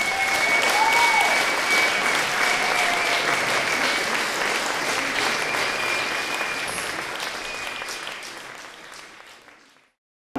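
Audience applauding, with a long, high, steady whistle over the clapping through the first few seconds; the applause fades out near the end.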